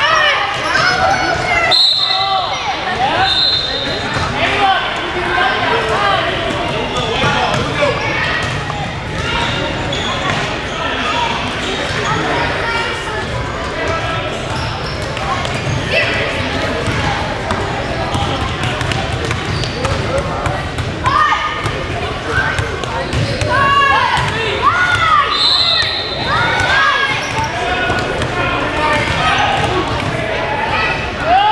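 Youth basketball game in a gym: a basketball bouncing on the hardwood and sneakers squeaking, with spectators' voices and shouts echoing around the hall.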